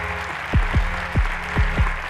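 An audience applauding over an edited-in music bed. The music holds steady low notes, with five deep drum hits that drop in pitch.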